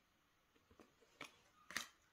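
Near silence, with a few faint clicks in the second half from trading cards being handled.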